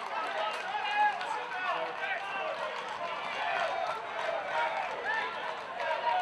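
Several voices of players and spectators shouting and calling out across an outdoor football pitch, overlapping one another.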